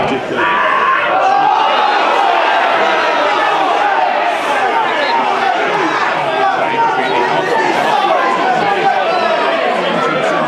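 Many voices talking and shouting over one another: footballers and spectators reacting to a foul, with a player down on the pitch.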